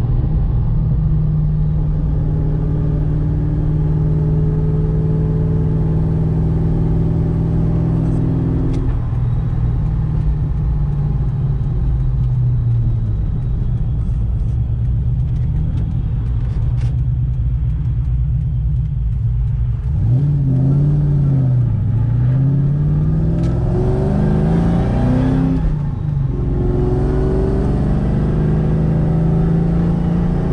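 Ford Mustang engine heard from inside the cabin, running steadily at first, then revving up under acceleration. Its pitch falls and climbs again with manual gear changes, about 21 and 26 seconds in.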